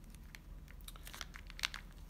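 Clear plastic zip-lock parts bag crinkling faintly as it is handled and turned over, a scatter of small crackles.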